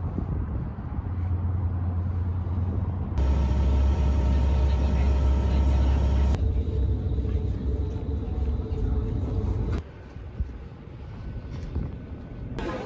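Steady low rumble of an NYC Ferry boat under way, in a few short clips cut one after another. It is loudest a few seconds in and drops quieter about ten seconds in.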